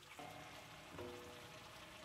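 Faint sizzling of a large pot of mixed vegetables simmering in a spiced tamarind gravy, with two brief faint tones, one just after the start and one about halfway.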